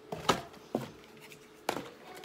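Small products from a subscription box being set down on a tabletop: three sharp knocks, about a third of a second in, under a second in, and near the end.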